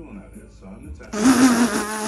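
A loud buzzing sound, about a second long, starting about a second in.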